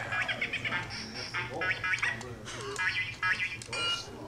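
A man's voice in short, harsh, strained bursts of unaccompanied vocalising, over a steady low electrical hum.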